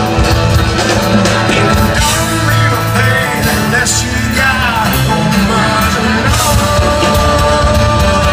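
A live rock band playing loudly: strummed acoustic guitar, electric guitar and drums. A bending pitched line comes through about four seconds in.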